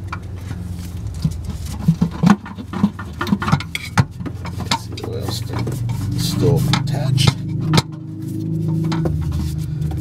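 Sharp clicks and knocks of a pry tool working a Chevy Sonic's cracked oil pan loose from the engine, over a low steady hum that grows stronger in the second half.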